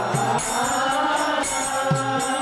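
Devotional chanting of a mantra (kirtan), with hand cymbals jingling in a steady rhythm and a few low drum strokes.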